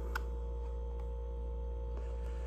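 Steady low hum of room tone, with one faint click of puzzle pieces knocking together just after the start.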